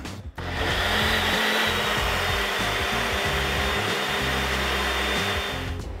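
Ninja personal blender running, blending a thick mix of milk, oats, chia seeds, banana, peanut butter and protein powder. A steady motor whine starts about half a second in and cuts off just before the end.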